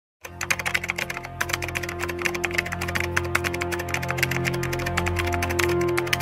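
Computer-keyboard typing sound effect, a quick run of clicking keystrokes starting a moment in, over a steady droning music bed.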